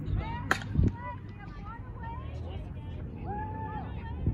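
A softball bat striking a pitched ball once, a sharp crack about half a second in, with distant voices calling around the field.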